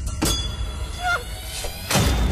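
Trailer sound design: a sharp hit, then a metallic ringing screech with a short falling squeal near the middle, and another hit at the end, all over a deep steady rumble.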